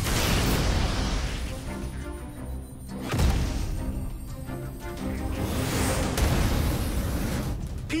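Dramatic action background music with held notes, over cartoon energy-blast sound effects: a rushing whoosh at the start, a heavy impact about three seconds in, and another rushing swell around six seconds.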